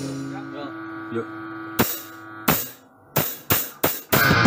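A steady electric hum from the band's amplifiers as the music dies away. Then five sharp clicks come at a quickening pace, the last three about a third of a second apart, just before the band starts playing.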